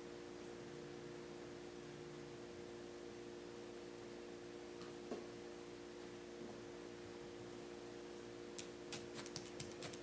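Faint steady room hum, then near the end a quick run of light sharp clicks: a felting needle tool stabbing into wool.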